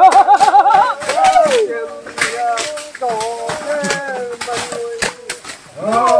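Men's voices calling out across the work site, one holding a long wavering call in the first second, mixed with several sharp strikes of machetes chopping undergrowth and bamboo.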